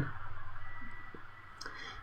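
A pause in speech: low room tone with a faint steady high tone and a few soft clicks, most of them shortly before the voice returns.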